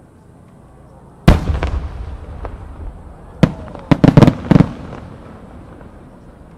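Aerial firework shells bursting, 8-gou (about 24 cm) shells. One loud boom about a second in rumbles away for about a second. A sharp crack follows, then a quick cluster of four or five loud bangs around four seconds in.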